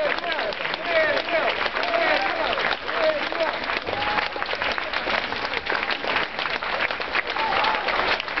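A large crowd clapping densely and steadily, with scattered cheering shouts and whoops rising over the applause.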